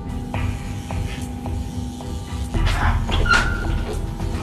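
Film background score of sustained notes over a steady low rumble, with scattered knocks and a louder rasping noise about three seconds in.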